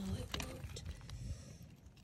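Beach stones clicking and shifting as hands dig at and tug on a tangle of old rope buried among the cobbles, with a few sharp knocks in the first second and quieter rustling after.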